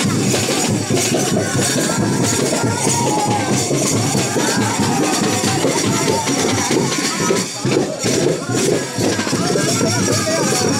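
Loud live drumming on hand-held frame drums, with a crowd's voices mixed in.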